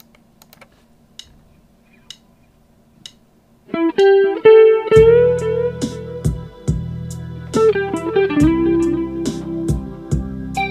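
Ibanez Prestige electric guitar, recorded direct into a Boss Micro BR without pedals, improvising a lead over E minor: sustained melody notes with bends. It comes in after about three and a half seconds of quiet with a few faint clicks. From about five seconds in it is joined by a low backing part and a steady beat.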